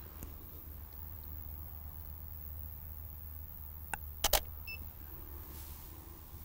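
A Canon DSLR's shutter fires once, two sharp clicks close together about four seconds in, after a faint click just before. A short, faint beep follows. A steady low rumble runs underneath.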